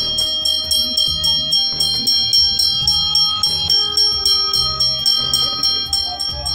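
Brass puja hand bell rung with rapid, even strokes, its ringing held steady throughout, as is done while the arati lamp is waved. Devotional music with a low beat plays underneath.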